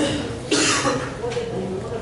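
A person coughing: a short, harsh burst about half a second in, with speech around it.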